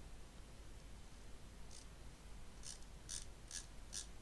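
Five faint, sharp computer mouse clicks in the second half, over a steady low hum.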